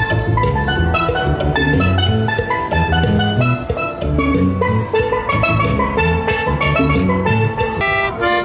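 Steelpan melody struck with mallets in a quick run of bright ringing notes, over a backing track of drums and a walking bass line.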